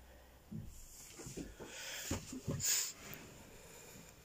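Faint handling noise from a phone being moved: soft rustles and irregular knocks, with a short breathy hiss about two-thirds of the way in.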